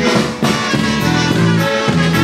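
A live polka band playing a steady bouncing beat: electric bass stepping between notes under a drum kit, accordion and trumpets.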